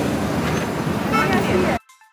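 Busy street din of pedestrian chatter and road traffic. It cuts off suddenly near the end, where a faint high-pitched melody begins.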